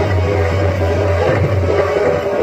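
Loud music with drums and a steady beat, accompanying dancing on stage.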